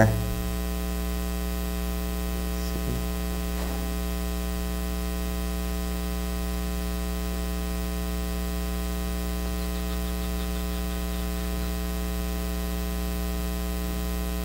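Steady electrical mains hum with a stack of even overtones on the recording's audio feed.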